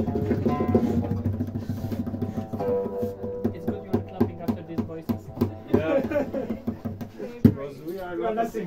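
Oud playing held and plucked notes over a steady run of short percussion taps, with a voice breaking in briefly about six seconds in. A single sharp knock near the end is the loudest sound.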